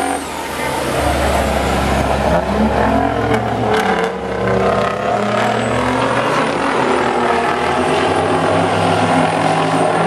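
Several racing semi-truck tractors' diesel engines running hard together around an oval track, their engine notes slowly rising and falling.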